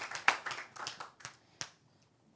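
Scattered hand claps from an audience, thinning out and fading over about a second and a half, with one last lone clap.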